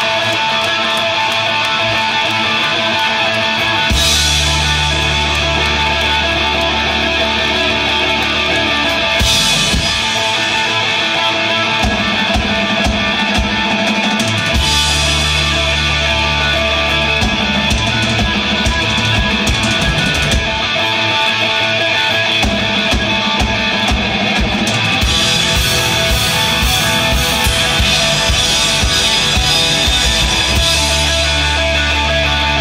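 Rock band playing live at full volume: distorted electric guitars with drum kit and bass. The heavy low end comes in about four seconds in.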